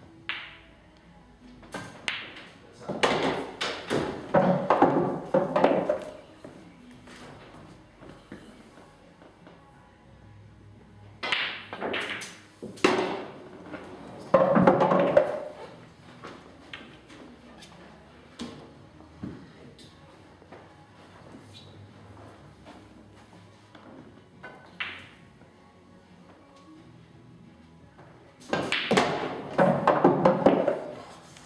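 Pool balls clicking: the cue tip striking the cue ball, balls knocking together, and balls dropping into pockets over several shots. Louder passages of background music and voices come and go over the clicks.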